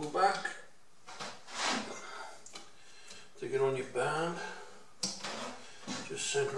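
A man's voice, indistinct, just after the start and again about three and a half seconds in, with a short scraping noise of bench work in between and a sharp tick near the end.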